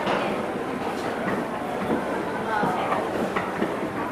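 Wood carvers' mallets tapping on chisels: a dense, uneven patter of small taps with a few sharper knocks, over background voices.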